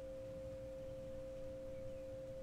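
A steady, unchanging drone tone at one pitch, with fainter tones above and below it, over a low rumble.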